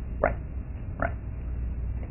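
Steady low room hum with two brief pops nearly a second apart.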